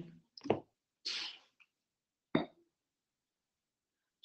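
Handling of a plastic water bottle close to the microphone: a short sharp click about half a second in, a brief breath-like rush, and a second click just past the middle as the bottle is picked up and opened.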